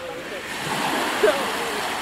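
Small waves washing up onto the beach: a hiss of surf that swells about half a second in and slowly eases off.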